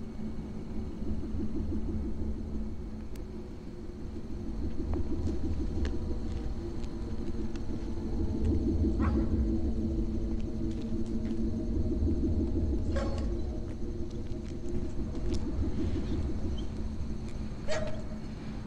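Steady low rumble of motor vehicle traffic, with a few faint clicks scattered through it.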